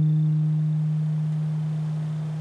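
Electric bass guitar holding the last note of the song's outro, an Eb, which rings on as a single steady tone and slowly fades.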